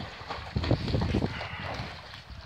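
Water splashing and sloshing as a dog paddles to the pool steps and climbs out, in uneven splashes that are busiest about midway.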